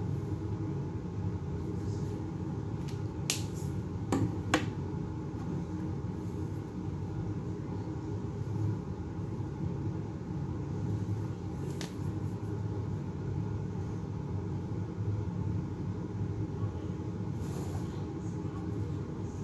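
Steady low rumbling background noise with a few sharp clicks: one about three seconds in, a louder pair a second later, one near the middle and one near the end.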